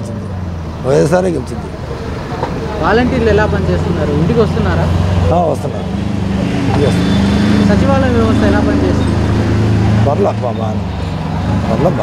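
A man speaking Telugu over the steady low hum of a nearby motor vehicle engine, which grows louder in the middle of the stretch and fades near the end.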